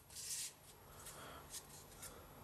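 Faint rustle of Pokémon trading cards sliding against one another as they are moved within a hand-held stack, with a short swish near the start and a few light ticks after.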